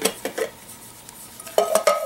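Metal cup of a Swiss M84 canteen clinking against the bottle as it is handled: a few clicks at the start, then a cluster of clinks with a short ringing note near the end.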